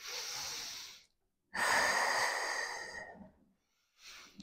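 A woman breathing audibly while exercising: a short, soft breath, then a louder, longer one lasting nearly two seconds.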